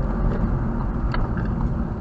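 Car cabin sound while driving: a steady low drone of engine and tyre noise heard from inside the car.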